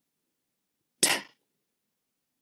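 A voice saying the phonics sound "t" once, a short breathy "tuh" about a second in, with silence around it.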